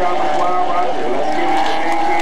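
Stock car engine running as the car circles the track, with people's voices over it.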